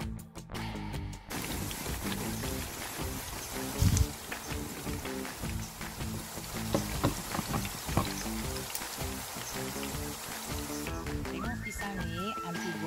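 Banana slices deep-frying in hot oil in a wok, a steady sizzle that sets in about a second in, with a few knocks, the loudest about four seconds in. Background music plays under it.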